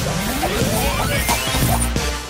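Cartoon soundtrack: music with a long rising glide, and crashing, clattering impacts as wooden treasure chests pile onto a pirate ship.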